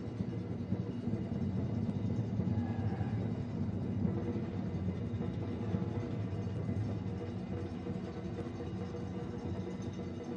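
Low, steady stadium ambience with music playing in the background.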